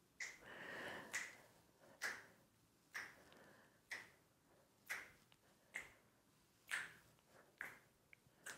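Faint finger snaps, evenly spaced at about one a second.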